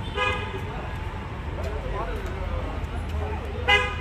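Two short vehicle horn toots, one at the start and a louder one near the end, over a steady low traffic rumble.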